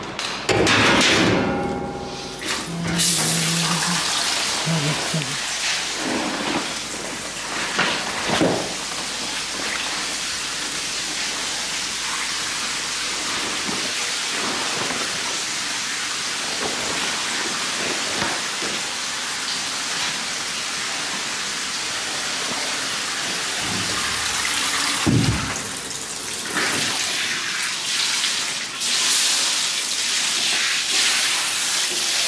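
Water running steadily with a constant hiss, as from a tap or spray hose used to wet cloths in a steel sink.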